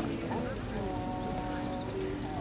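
Music with long held notes over nearby voices, with the hoofbeats of a horse trotting on grass.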